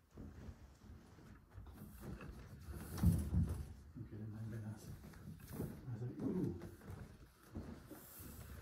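Low, indistinct voices murmuring, with footsteps and shuffling as people walk through a room; the loudest stretch is about three seconds in.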